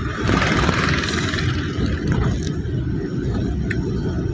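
Engine and road noise of a moving vehicle heard from inside it: a steady low rumble, with a hissing rush over it in the first second or so.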